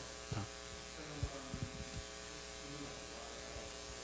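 Steady electrical hum of the room's sound system. Faint, distant speech from someone talking away from the microphone comes through in the first couple of seconds.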